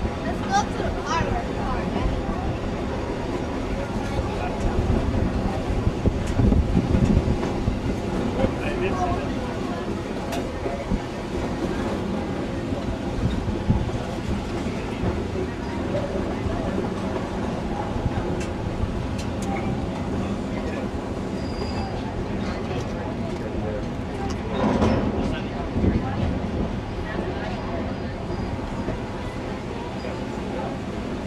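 Durango and Silverton narrow-gauge passenger train rolling along the track, heard from an open coach window: a steady rumble of the cars with scattered wheel clicks as it rounds a curve.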